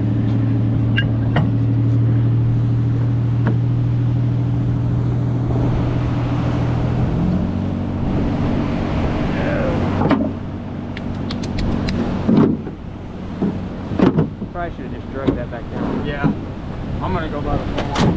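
Pickup truck engine idling steadily, its pitch shifting slightly about seven seconds in. From about ten seconds the engine falls back and a series of sharp clicks and knocks follows.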